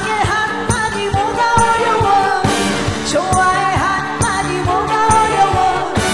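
A female singer singing a trot song live into a microphone, backed by a live band with a steady drum beat.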